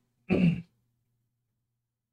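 A man briefly clears his throat once, a short rough sound a quarter of a second in, followed by silence.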